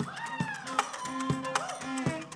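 Live acoustic band playing, with a high melodic line sliding up and down in pitch over steady low bass notes and sharp percussive hits.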